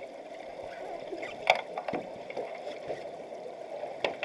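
Underwater pool sound picked up by a camera below the surface during an underwater hockey game: a steady muffled wash of water noise with scattered clicks and knocks, one sharp click standing out about a second and a half in.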